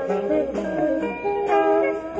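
Live jazz quintet playing: electric guitar and saxophones in interweaving melodic lines, with drums.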